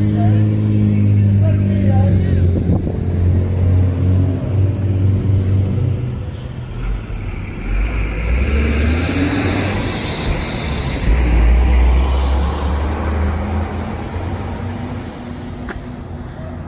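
A motor vehicle's engine running close by with a steady low hum for the first several seconds. Then a vehicle passes, its deeper rumble and road noise swelling and fading in the middle.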